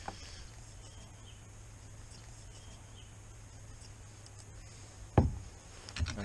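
Quiet background with a faint steady low hum. About five seconds in comes a single sharp knock on the wooden workbench, as the cup or test-strip box is set down.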